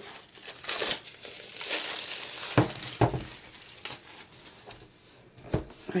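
Clear plastic shrink-wrap being torn and pulled off a metal crayon tin, crinkling in bursts, with a few sharp clicks in the second half.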